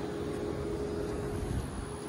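Steady outdoor background noise with a low rumble and a faint steady hum.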